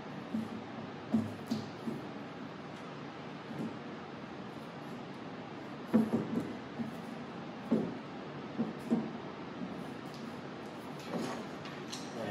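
Camera tripod being handled: scattered clicks and clunks as the center column and horizontal arm are turned and set upright and the legs knock on the tabletop, the loudest about six seconds in, over a steady background hiss.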